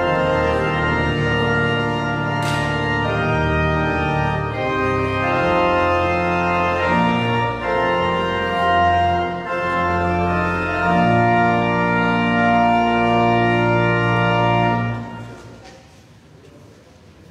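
Organ playing slow, sustained chords that change every second or so. The final chord stops near the end and dies away over about a second in the room's echo.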